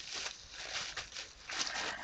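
Wrapping being unwrapped by hand: faint, irregular crinkling and rustling.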